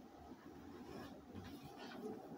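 Faint rustle of paper book pages being turned by hand, a few soft brushes in the second half, over a low steady room hum.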